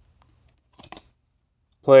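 A short, soft rustle of a trading card being flipped over in the hand, about a second in. Otherwise quiet until a man starts speaking at the very end.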